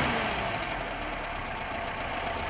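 Car engine of a 1980-model car, fitted for LPG, idling steadily in the open engine bay.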